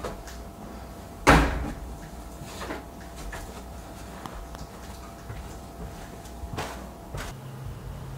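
Front-loading laundry machine door pushed shut with one loud sharp clack about a second in, followed by a few lighter knocks.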